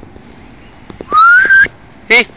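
A person whistling to call a dog back: a loud whistle a little over a second in that rises in pitch, breaks briefly and ends on a short held note.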